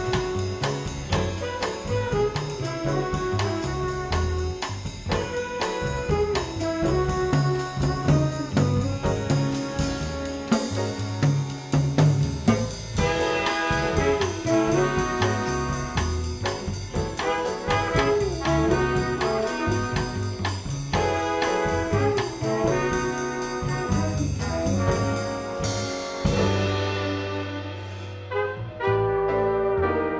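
Student jazz ensemble playing live: trumpets and alto saxophone play over upright bass and drums, with a cymbal ticking steadily in time. Near the end the cymbal stops and the horns and bass play on.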